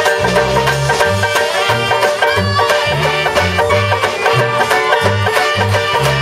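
Live band playing an instrumental passage of an upbeat dance tune: saxophones and clarinet carry the melody over strummed banjo, with a low bass line stepping from note to note beneath them.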